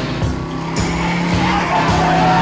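Action music with a steady beat, over a lorry's tyres skidding.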